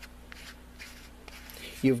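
Faint rubbing and light scuffing of fingers handling a Coghlan's plastic match case, turning it over and gripping its molded plastic body, with a few soft ticks.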